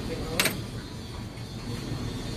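Handling noise from a rotary engine's rotor being lifted in its housing: a single short, sharp metallic scrape or click about half a second in, over low, steady background noise.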